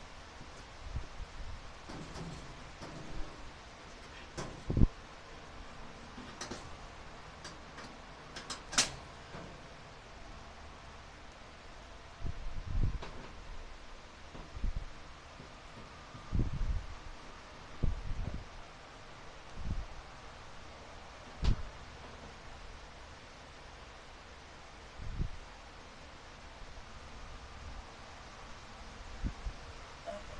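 Scattered sharp clicks and short low thumps of hands and parts being handled inside a clothes dryer cabinet, over a steady hiss. The loudest clicks come about five and nine seconds in, and a run of dull thumps follows in the second half.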